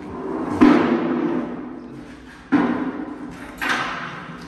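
Steel parts of a two-post car lift being handled during assembly: two loud metallic bangs about two seconds apart, each ringing on and fading over a second or more, then a shorter, higher clank near the end.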